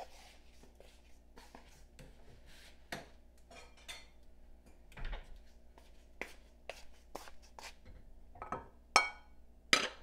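Kitchen dishes and utensils being handled: scattered light clicks and knocks, then two loud ringing clinks near the end, as of a bowl or ladle against a pot.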